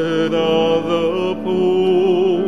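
Communion hymn: a cantor singing slow, held notes with vibrato over piano accompaniment.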